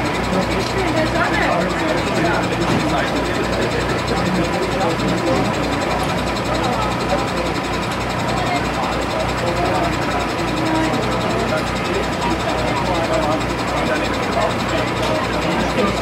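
An engine idling with a steady, even low throb, under a murmur of voices.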